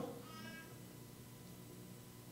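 Quiet room tone with one brief, faint high-pitched squeak about half a second in.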